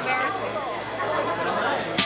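Indistinct chatter of several people talking in a room, with a steady low hum underneath.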